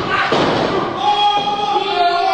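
Thud of a wrestler's body hitting the wrestling ring canvas about a third of a second in, followed by crowd voices shouting.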